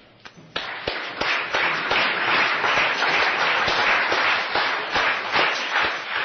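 Audience applauding. It starts about half a second in, holds as a dense patter of many claps, and begins to thin out near the end.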